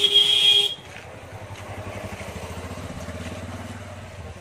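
A vehicle horn sounds for about a second at the start, then a motorcycle engine runs with a low, even putter that fades near the end.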